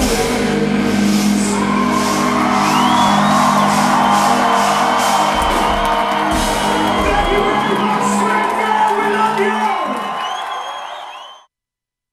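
A hard-rock band plays live in a club, holding a sustained distorted chord with crashing cymbals while the audience whoops and shouts. The sound fades and cuts to silence about eleven and a half seconds in.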